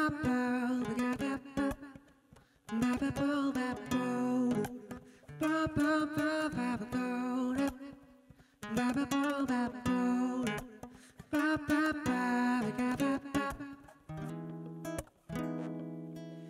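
Instrumental passage on a nylon-string classical guitar and a long-necked plucked lute. The plucked melodic phrases last a second or two each, with short gaps between them, and end on a held chord.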